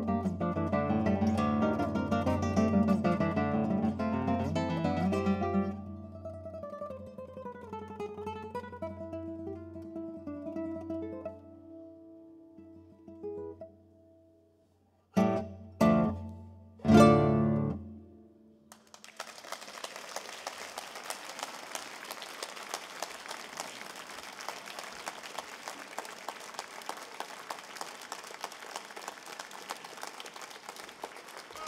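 Classical guitar played solo: a loud, busy passage that thins out into quieter single notes, then three loud strummed closing chords about halfway through. An audience applauds after that.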